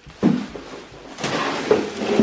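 Plastic garbage bags rustling as they are handled. There is a short burst about a quarter second in, and a louder, denser crinkle in the second half.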